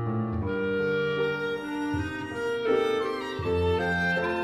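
Live chamber trio of violin, clarinet and grand piano playing a melodic passage in held notes, the clarinet prominent over piano accompaniment.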